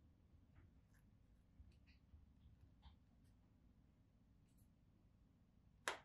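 Near silence with faint scattered ticks and rustles of fingers handling a leather-covered AirPods case, then one sharp click near the end as the case's hinged lid snaps.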